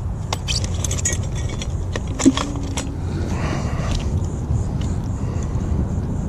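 Light metallic clicks and rattles of tackle being handled as a small fish is unhooked, over a steady low rumble on the phone microphone. A brief low-pitched tone sounds once about two seconds in.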